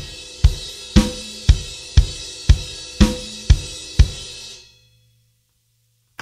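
Acoustic drum kit with Zildjian cymbals playing a loud, straight beat, about two strokes a second, with crashed cymbals ringing over it. It stops about four seconds in and the cymbals ring out briefly.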